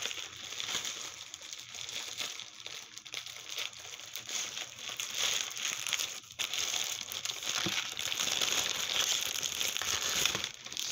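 Plastic bags crinkling and crackling as a double-bagged package is handled and opened by hand, with a brief lull about six seconds in.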